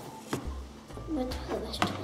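Two short sharp clicks, one about a third of a second in and one near the end, with a brief faint voice between them.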